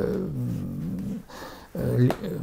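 A man's drawn-out hesitation sound, a low wavering "uh" held for about a second, trailing off before he speaks again near the end.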